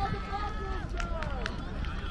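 Voices calling out across a youth football match, over a steady low rumble, with a few sharp ticks about a second in.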